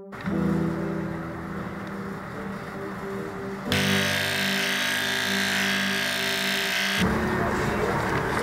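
Background music with steady sustained tones. About four seconds in, Oster PowerPro electric hair clippers buzz steadily for about three seconds as they shave fur from a kitten, then cut off abruptly.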